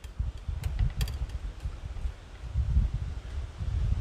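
Irregular low rumble of wind on the microphone, with a few faint light clicks in the first second and a half as metal wire is worked by hand around nails into a spiral.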